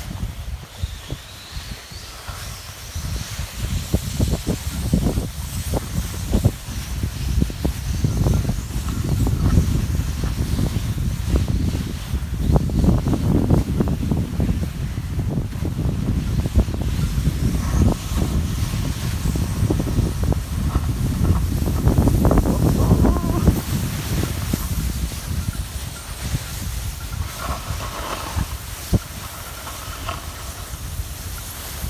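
Snow hissing and crunching under a person glissading seated down a slope of soft, rotten spring snow, with a heavy rumble on the microphone. The sliding grows louder through the middle and eases off toward the end.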